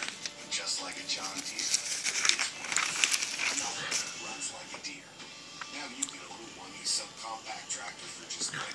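Glossy newspaper coupon insert pages rustling and crinkling as they are flipped, in short scratchy bursts. Underneath, a television commercial plays faintly with music and a voice.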